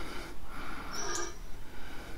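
Quiet moment with a soft breath and a faint click about a second in: the single tail button of an Olight Javelot Mini flashlight being pressed to switch it on.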